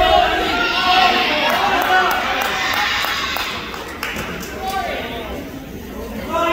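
Spectators in a gymnasium shouting and yelling at once during a wrestling pin attempt, several voices overlapping. The shouting is loudest for the first few seconds and dies down about four seconds in.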